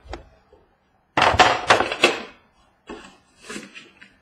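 Cardboard trading-card boxes being handled and set down on a wooden tabletop: a dense burst of sliding and knocking about a second in, then a few lighter taps and rustles near the end.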